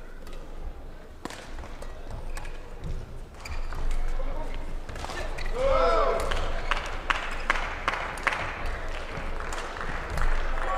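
Badminton singles rally: sharp racket strikes on the shuttlecock and footwork on the court, getting busier in the second half. A short rising-and-falling squeal comes about halfway through.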